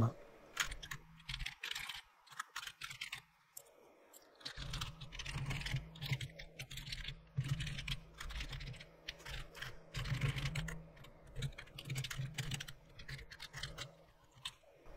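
Typing on a computer keyboard: a quick run of key clicks with short pauses, over a low steady hum that comes in about four seconds in.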